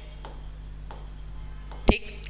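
Pen scratching and tapping on an interactive display screen as words are written, with one sharp tap just before the end; a faint steady low hum runs underneath.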